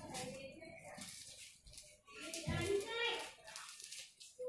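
Speech only: children talking.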